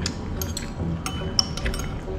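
Metal chopsticks and a spoon clinking against a ceramic bowl of noodles: a run of light clinks, the sharpest and most ringing one just past the middle.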